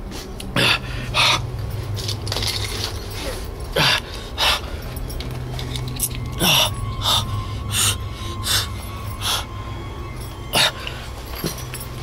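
A man breathing hard close to the microphone in short, sharp gasps and exhalations, about one a second at uneven spacing, over a low steady hum.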